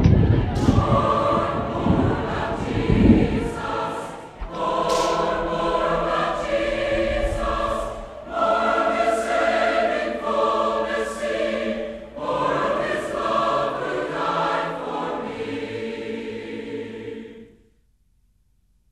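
Choral closing-theme music: a choir singing held chords in phrases about four seconds long, with a heavier low accompaniment at the start. The music cuts off abruptly near the end.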